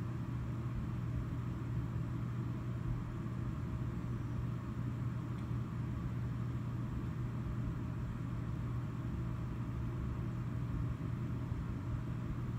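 A steady low hum with faint background noise, unchanging throughout.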